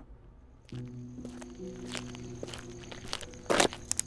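Footsteps walking, irregular and spaced out, with a louder cluster of steps near the end. Under them, a steady low music drone of sustained notes comes in just under a second in.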